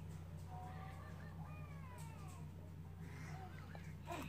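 Faint baby babbling and cooing, a few short rising and falling calls, over a steady low hum.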